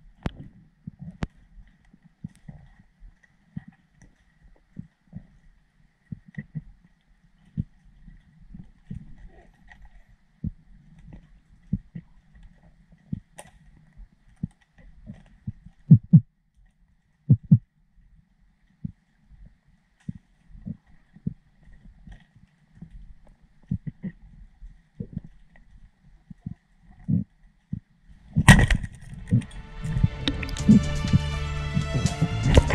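Underwater recording of a diver's speargun-mounted camera: irregular dull knocks and clicks from handling and swimming, with a faint steady high whine. Near the end a loud hit is followed by music.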